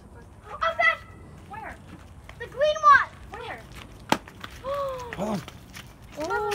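Short, high-pitched calls from children's voices, rising and falling in pitch, with one sharp click about four seconds in.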